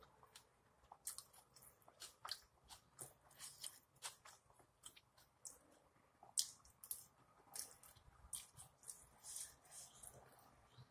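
A person chewing lamb birria close to the microphone: a faint, irregular run of wet mouth clicks and smacks, several a second, with one louder click about six seconds in.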